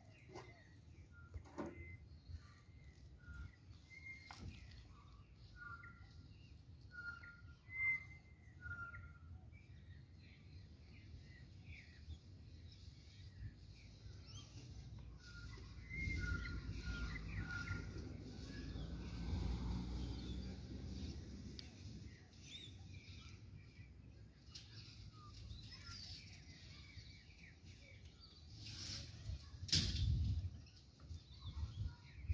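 Birds chirping in short, repeated high calls, thickest in the first half. Midway a low rumble swells for several seconds and fades, and there is a sharp knock near the end.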